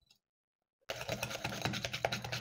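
Hand wire whisk beating creamed butter and sugar in a glass bowl, its wires clicking rapidly and evenly against the glass. It starts about a second in, after a moment of dead silence.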